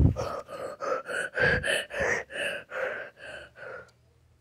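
A small child's voice in short rhythmic gasping bursts, about three a second, rising a little in pitch and then easing off near the end.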